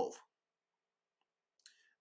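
Near silence in a pause between a man's spoken phrases, with one faint short click near the end.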